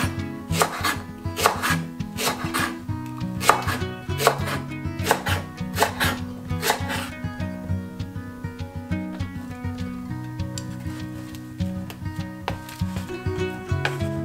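Kitchen knife slicing a Japanese long onion (naga negi) on a bamboo cutting board, cutting about twice a second through the first half, then stopping. Background music plays throughout.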